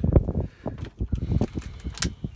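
Gusty low rumble of wind buffeting the microphone, with a few light clicks and a sharper click at the end.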